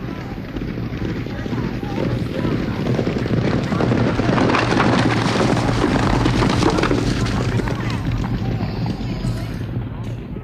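Sound effect of a horse race going by: a rumbling, crowd-like rush of noise that swells to a peak midway and then fades.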